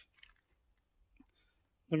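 A few faint, light clicks of small metal screws being handled in the fingers. A man's voice starts speaking at the very end.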